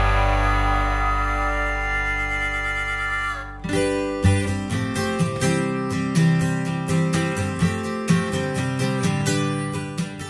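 Background music: a held chord that fades over the first three and a half seconds, then a new section with a steady rhythm of repeated notes from about four seconds in.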